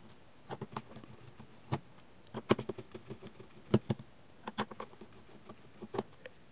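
Screwdriver turning out the screws from the back of a Fluke 70-series multimeter's plastic case: a run of small, irregular clicks and ticks, with a few louder clicks along the way.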